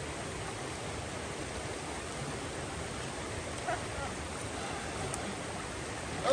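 Shallow, rocky stream flowing over stones, a steady wash of water noise.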